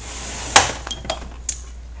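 A metal Craftsman tool chest drawer sliding open, with a sharp clack about half a second in and a few light metallic clinks of the sockets inside after it.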